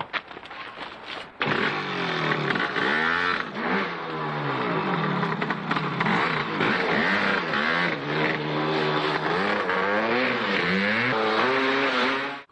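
Maico two-stroke single-cylinder dirt-bike engine starting suddenly about a second and a half in, then revving up and down again and again under hard riding.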